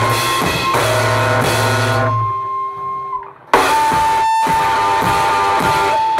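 A live rock band with drums and electric guitar plays, then cuts out abruptly about two seconds in, leaving a single held high note ringing on its own. After a brief near-silent gap the whole band crashes back in together about three and a half seconds in, with a new sustained note over the drums.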